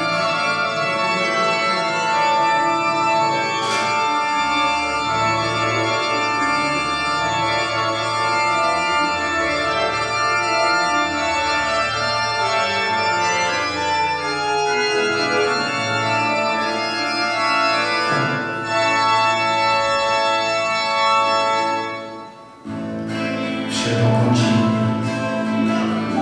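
Organ chords played on an electronic keyboard, held for several seconds each before changing, with a brief drop in loudness near the end.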